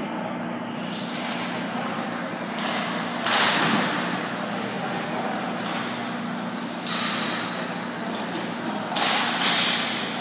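Ice rink ambience in a large echoing hall: a steady low hum, with skate blades scraping the ice in three hissing bursts, the loudest about three and a half seconds in, then near seven and nine seconds.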